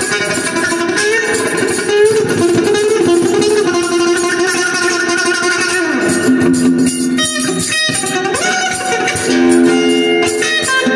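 Red Stratocaster-style electric guitar played with sustained single notes; about six seconds in a note slides down in pitch, and a note glides back up shortly before the end.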